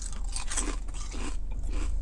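A person biting into and chewing kettle-cooked potato chips: a run of crisp, irregular crunches, over a low steady hum.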